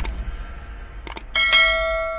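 Subscribe-button sound effects: quick mouse clicks about a second in, then a notification bell chime that rings on, over the fading tail of the intro music.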